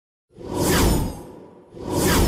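A whoosh sound effect that swells and dies away over about a second. A second whoosh begins building near the end.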